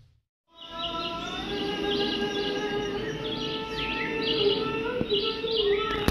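Brief silence, then from about half a second in, held music chords with small birds chirping over them again and again.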